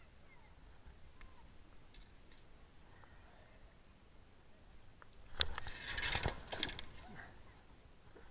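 Close handling noise: a dense burst of sharp clicks and rattles starting about five seconds in and dying away over a second and a half, loudest about six seconds in.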